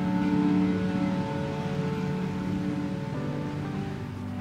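Background music of slow held chords. The chord shifts about a second in and again near the end.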